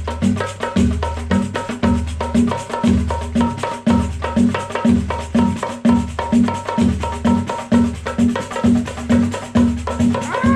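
A one-man samba percussion kit playing a steady samba groove: a pedal-beaten pancake surdo gives a low bass pulse about twice a second under dense, sharp hand strokes on a frame drum and small percussion, with a ringing metallic tone on top.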